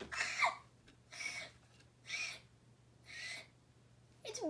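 A girl's breathy gasps in surprise, four short ones about a second apart, the first sliding down in pitch.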